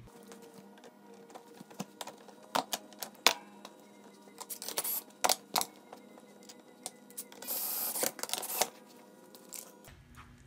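Metal parts of a steel recliner mechanism being handled and fitted: a series of sharp clicks and knocks, then a rasping noise about a second long near the end.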